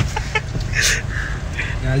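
Men laughing in short breathy bursts inside a car, over the car's low steady rumble.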